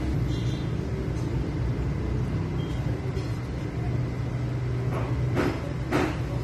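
Steady low mechanical rumble with a hum underneath, and a few sharp metallic clicks near the end as the fitting on the clutch slave cylinder's bleeder is handled.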